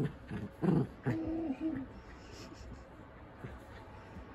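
Poodle growling in play while tugging at a sock: a few short growls in the first second, then a longer wavering whine-like growl, after which it goes quiet.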